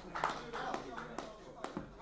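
Indistinct voices chatting in the room with a few scattered sharp taps, all fading away.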